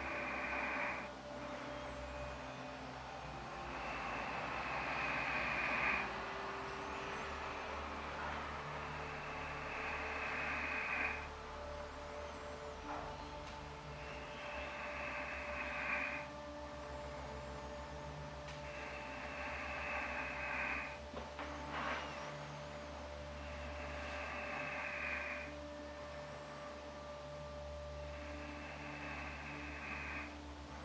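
Slow, controlled qigong breathing, one breath of about two seconds roughly every five seconds, over a faint steady low hum.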